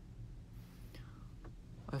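Quiet room with a steady low hum; about halfway a man lets out a soft, breathy whispered sound, and a small click follows before he starts speaking at the very end.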